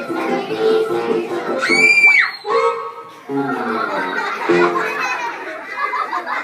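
Children singing a song with musical accompaniment, broken about two seconds in by a loud, high-pitched child's shriek that rises and falls.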